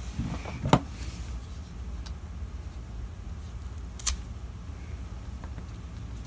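Two short sharp clicks, one just under a second in and one about four seconds in, over a steady low hum: a plastic-handled folding knife being handled and picked up off a wooden table.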